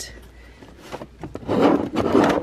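Hands rummaging through small items in a sewing cabinet drawer: a scraping, rustling sound with small clicks that starts about one and a half seconds in.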